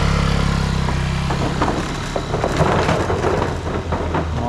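Motor scooter engine running as a scooter pulls away across a wooden plank bridge, its steady drone strongest at first, then giving way to scattered knocks and rattles of the boards under the wheels.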